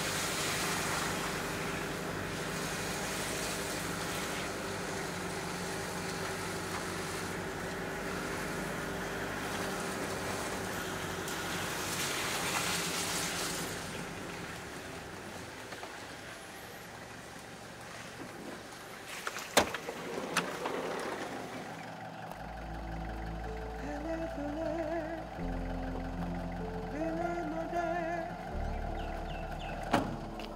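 A vehicle driving along a road, heard from inside, under background music. A sharp click comes a little before the twenty-second mark, and from about then the music takes over, with deep bass notes and a melody.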